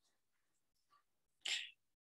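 Near silence, broken about one and a half seconds in by a single short, breathy burst from a person, sneeze-like, lasting about a quarter of a second.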